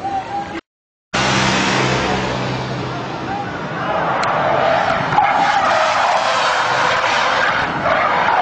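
Car drifting: engine running hard and tyres squealing and skidding on asphalt, the squeal growing stronger and wavering in pitch from about halfway on. The sound drops out completely for half a second about a second in.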